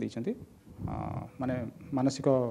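A man speaking haltingly in short fragments with brief pauses, and a short rough noise about a second in.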